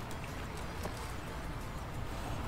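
Steady low outdoor rumble and hiss, with a few faint clicks.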